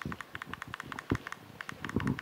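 Faint, rapid, irregular ticking and rustling with a short low knock about a second in: handling noise from a handheld microphone being lowered.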